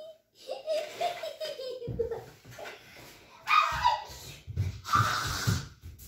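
A young child giggling and laughing, with a few breathy bursts of laughter. Low knocks and rumble close to the microphone come through the second half.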